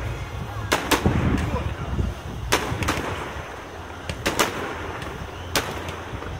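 Aerial fireworks shells bursting overhead: a string of sharp bangs at uneven intervals, about seven in six seconds, some in quick pairs, with a rushing haze of sound between them.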